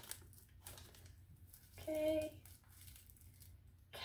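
Faint crinkling of a paper sleeve as a potted African violet is slid out of it, with a short hummed "mm" of the voice about two seconds in.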